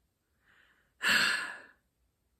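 One breathy sigh from a person: a faint intake, then a louder exhale about a second in that fades away within about half a second.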